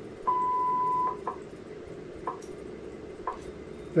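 WWV shortwave time-signal broadcast: the long top-of-the-minute beep, a little under a second long, marking the start of the announced minute, followed by short second ticks once a second. Faint radio static runs underneath.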